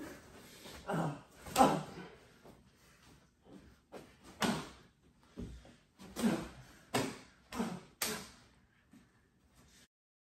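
Blows landing in a staged wrestling fight: about half a dozen sharp smacks and thumps of fists and bodies, the loudest about a second and a half in, mixed with short grunts.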